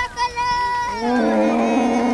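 A Bororo cow lowing: one long, low moo that starts about halfway through. It comes over a high, held voice that fills the first second.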